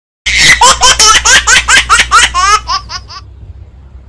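A baby laughing: a quick, even run of about ten laugh pulses, then three higher, shorter squeals as it fades out, just under three seconds in.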